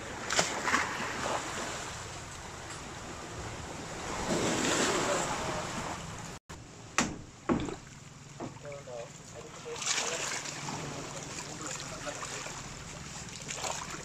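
Small sea waves washing against the shore, swelling about four seconds in and again near ten seconds, with a few short knocks and a brief cut-out midway.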